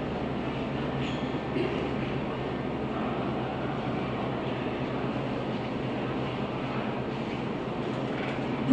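Steady room noise in a lecture room: a low hum under an even rush, unchanging throughout.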